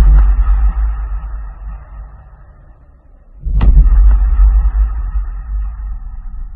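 Deep cinematic boom hits in an edited soundtrack, each a sudden heavy bass strike that rings out and fades over a few seconds. One fades away through the first three seconds, and another strikes about three and a half seconds in.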